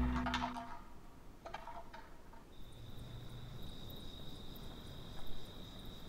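Music fading out in the first second. About halfway through, a cricket's steady, high-pitched trill starts and keeps going.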